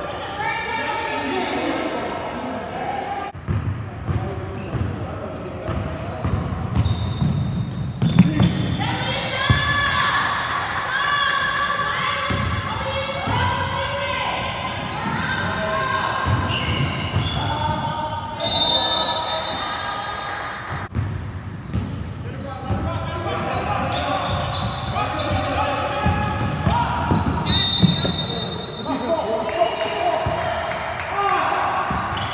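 Basketball bouncing on a hardwood gym floor during play, with players' voices calling out and echoing around the hall.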